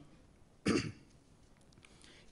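A man clears his throat once into a microphone: a single short, rough burst about two-thirds of a second in.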